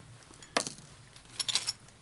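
Gaming dice clicking as a six-sided die is picked up and set down next to a four-sided die: one sharp click about half a second in, then a short run of small clicks about a second later.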